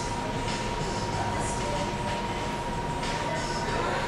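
Steady background hum and hiss of a store coffee bar, with a thin constant high tone running through it.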